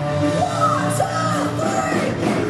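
Live hard rock band playing loud, with a high female voice singing and yelling in gliding phrases over the held chords from about half a second in.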